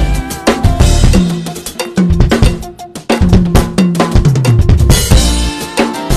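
Drum kit played fast, dense snare, tom, kick and cymbal hits in quick fills, over held, stepping bass notes from a backing track.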